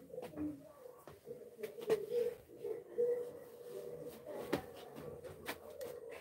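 A bird cooing over and over in a low pitch, with a few sharp clicks or knocks, the loudest about two and three seconds in.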